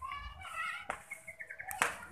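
Faint, high-pitched children's voices calling out, with a light click and then a sharper tap near the end.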